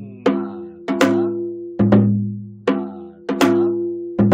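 Janggu (Korean hourglass drum) played in the repeating 'gu-gung da gi-dak' stroke pattern, the basic practice figure for the gutgeori rhythm. Deep strokes on the low head ring on with a steady hum, mixed with sharp cracks of the stick on the higher head, the figure coming round about every two and a half seconds.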